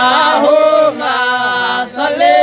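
A small group of voices chanting a devotional salawat (blessings on the Prophet Muhammad) together, with no instruments. It moves in long held notes, with a short break about halfway through and another near the end.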